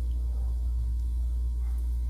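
A steady low hum, unchanging throughout, with no other distinct sound standing out above it.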